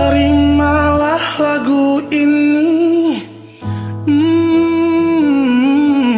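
Karaoke backing track of a slow pop ballad with a wordless sung melody line in long, wavering held notes, breaking off briefly a little past halfway.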